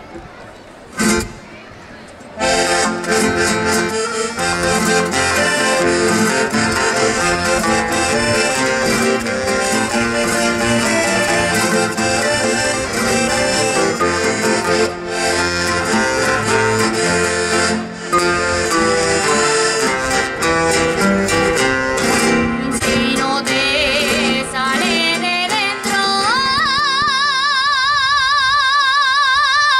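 Accordion and guitars play the instrumental introduction to a Navarrese jota, steady and full, after a brief loud sound about a second in. Near the end a woman's voice comes in, sliding up into a long held note with vibrato.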